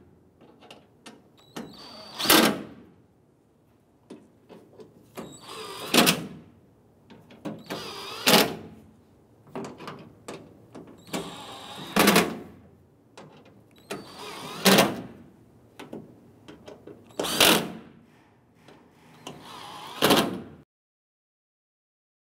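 A power drill with a socket on an extension running down the screws of a tailgate's inner cover panel one at a time: seven short bursts a few seconds apart, with fainter clicks and handling noise between. It cuts off abruptly near the end.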